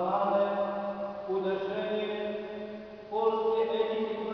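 A man's voice chanting in slow, long-held notes that step up and down in pitch, with a short break about three seconds in before the next phrase.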